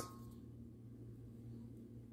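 Near silence: quiet room tone with a steady low hum, and a faint ringing tone that fades out within the first half second.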